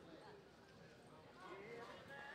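Faint hoofbeats of a horse loping on soft arena dirt, with faint voices in the background.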